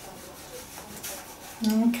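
Hands patting and rubbing balls of ready-to-roll icing flat on a worktop dusted with icing sugar: a faint, soft rubbing with light pats.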